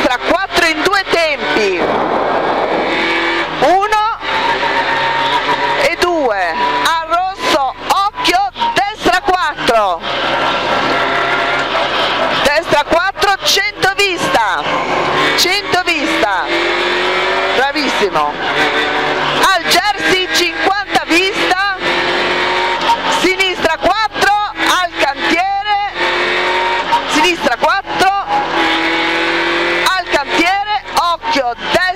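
Rover 216 rally car's 1.6-litre four-cylinder engine heard from inside the cabin at racing revs, its pitch climbing and dropping back with throttle and gear changes, with road and tyre noise underneath.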